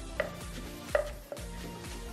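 Wooden pestle pounding shredded green papaya in a large clay mortar for som tam: about three dull knocks, the loudest about a second in, over soft background music.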